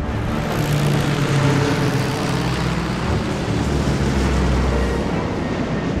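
Piston engines of a formation of twin-engine propeller bombers in flight: a loud, steady drone over a broad rushing noise.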